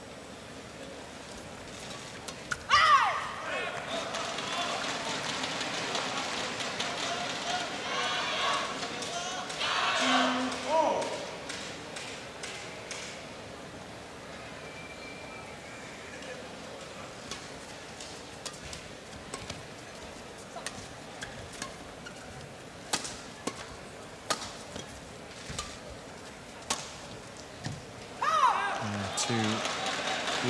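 Indoor arena crowd at a badminton match shouting and cheering loudly as a point ends, then a rally of sharp racket strikes on the shuttlecock, about one a second, followed by another rise of crowd noise near the end.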